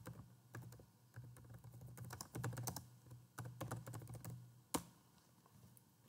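Typing on a computer keyboard: a quick, uneven run of faint key clicks, ending with a single louder key press just before five seconds in.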